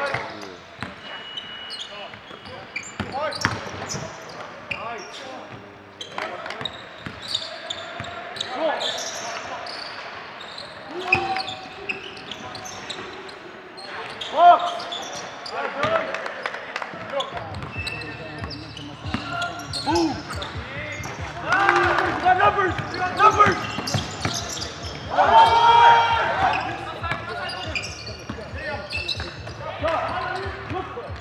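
Basketball dribbled on a hardwood gym floor during a game, with sharp knocks throughout. Players' indistinct shouts grow louder in the second half.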